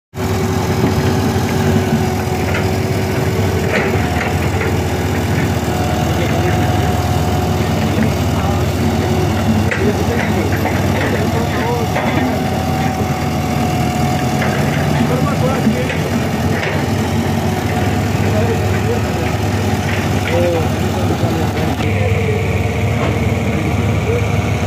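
Heavy diesel engine of a road roller running steadily, with a low, even hum that does not change.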